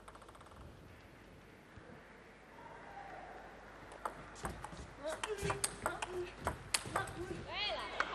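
Table tennis rally: the plastic ball clicking sharply off the rackets and the table in quick, irregular succession. The rally starts about halfway through and lasts about three seconds, after a quiet stretch of hall noise.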